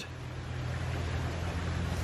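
Outdoor background noise: a steady low hum under a faint even hiss, with nothing sudden.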